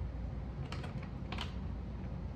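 Hard fishing lures and small items clicking and rattling against the plastic compartments of a tackle box tray as they are picked through by hand, in two short clusters of clicks about half a second apart. A steady low hum runs underneath.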